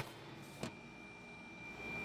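Faint room tone: a low steady hiss with a thin, steady high-pitched whine, a short click at the very start and a fainter one about two-thirds of a second in.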